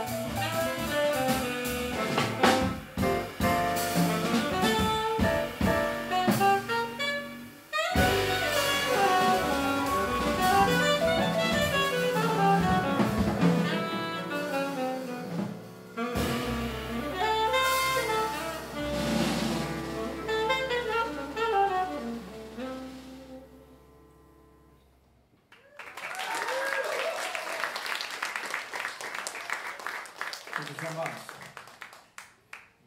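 Live jazz quartet of saxophone, double bass, piano and drum kit playing the end of a tune, thinning out over a long held low note that stops about three seconds before the end. The audience then applauds.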